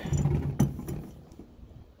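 Light handling noise of a steel gear spindle being turned in the hand: a low hum at first, a single sharp click about half a second in, then fading to quiet.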